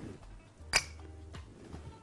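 Faint background music with one sharp click about three-quarters of a second in, a small knock of kitchenware on a hard surface, and a couple of fainter ticks.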